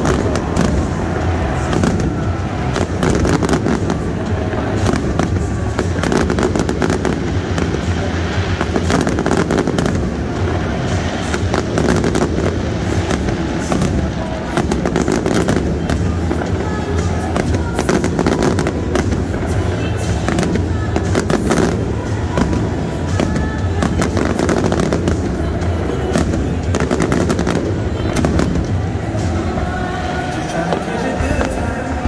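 Aerial fireworks display: many bangs and crackles following closely on one another throughout, with music playing underneath.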